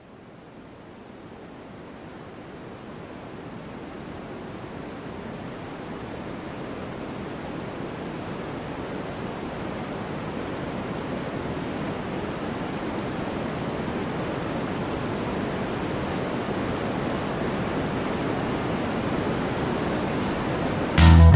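Steady rushing noise with no tones or beat, fading in and growing gradually louder throughout: a noise swell building up as the intro to an instrumental rock track.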